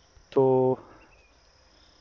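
One short spoken word, then near silence: room tone with a faint, steady high-pitched whine.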